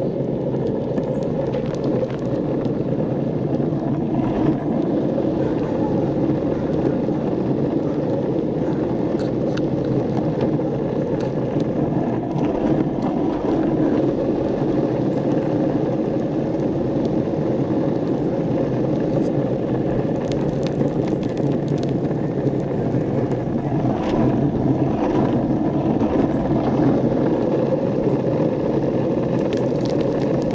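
Longboard wheels rolling steadily over asphalt: a continuous low rolling noise, broken by a few light clicks.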